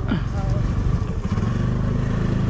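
Motorcycle engine running steadily while riding along a lane.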